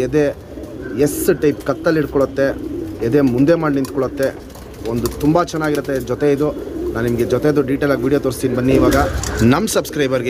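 Domestic pigeons cooing: low, rolling coos repeat one after another, with brief lulls about half a second in and near the middle.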